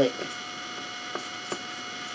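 Steady electrical hum in the room, with two faint clicks about a second and a second and a half in.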